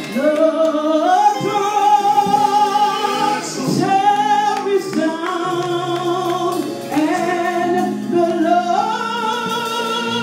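A woman singing a gospel song into a microphone with musical accompaniment, holding long notes that step up and down in pitch, some of them with vibrato.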